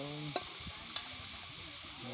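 Steady hiss of running river water with two sharp clicks about half a second apart, and a voice trailing off at the very start.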